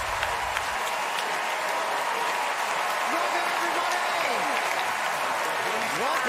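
Studio audience applauding, a steady clatter of many hands, with voices calling out and cheering over it. A low rumble of the backing music dies away just before a second in.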